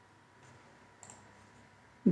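Near silence with two faint computer mouse clicks, about half a second and a second in.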